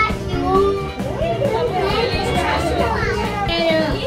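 Young children's voices and excited chatter over background music.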